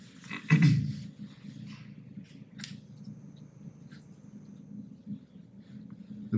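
Classroom room sound: a short voice sound about half a second in, then low background murmur with a couple of faint clicks from parts being handled and a thin high whine lasting a couple of seconds in the middle.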